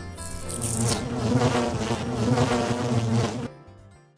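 Loud insect-like buzzing, like a swarm of flies or bees, used as a logo sound effect. It swells in at the start and cuts off sharply about three and a half seconds in.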